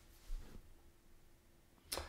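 Near silence: quiet room tone with a couple of faint, short clicks, one about a third of a second in and one just before the end.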